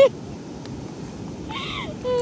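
A man's short rising-and-falling 'ooh' exclamation near the end, over a steady hiss of wind and surf, with one faint click about two-thirds of a second in.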